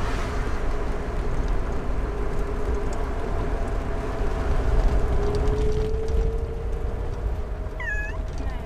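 Steady low road rumble inside a moving car, with a cat meowing once near the end.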